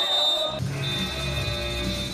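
Music with guitar, with a steady bass line coming in about half a second in.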